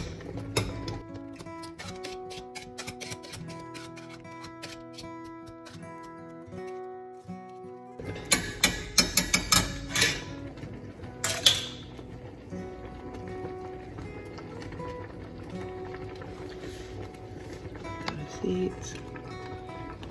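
Background music with held notes throughout. About eight seconds in comes a quick run of sharp metal knocks, with one more a few seconds later: a metal potato masher knocking against a stainless steel pot of peach jam.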